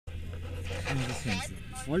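Mostly speech: a man says a couple of short words over a steady low rumble.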